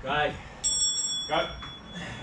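A bell-like chime: several high, pure tones ringing together, starting suddenly about half a second in and dying away over about a second and a half.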